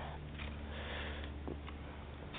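A person's sniff or breath through the nose, soft and lasting about a second, with one faint click shortly after, over the steady low hum of the recording.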